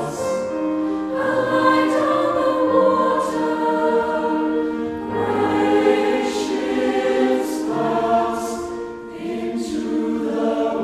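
A large mixed choir of men's and women's voices singing slow, held chords that change every second or two, with a few soft sung 's' sounds. It grows a little quieter near the end.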